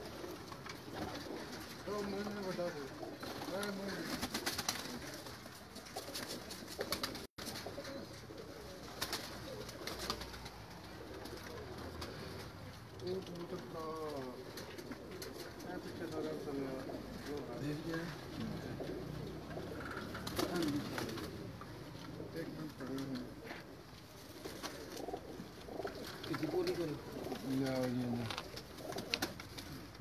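Domestic pigeons cooing repeatedly, short rising-and-falling calls one after another.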